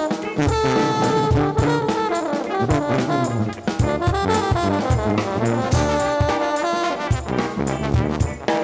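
Live brass band music: French horn and trombones playing over a drum kit beat.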